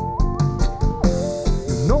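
Live reggae band playing an instrumental passage between sung lines: a melody of held notes steps upward and then back down over a steady drum beat and bass. The singer comes back in right at the end.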